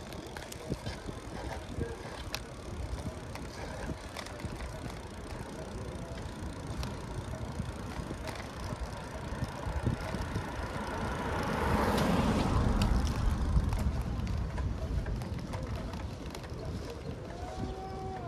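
Riding a bicycle along a city street: steady road and wind noise with scattered clicks. A car passes about twelve seconds in, its sound rising and then fading.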